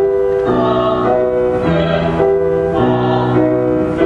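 A male and a female voice singing a duet together, moving through a series of held notes that change about every half second.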